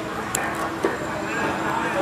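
Background noise of a sermon recording during a pause in speech: a steady hum and hiss with faint voices and a couple of sharp clicks.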